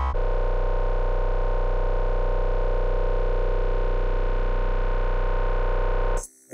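Dubstep music holding one long, steady synth chord over a deep bass note; a pulsing passage gives way to it right at the start.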